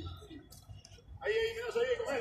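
Men's voices talking, indistinct, louder from about a second in.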